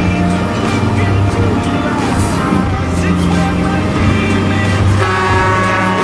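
Heavy truck driving past close by, its diesel engine running with a deep, steady rumble, mixed with background music.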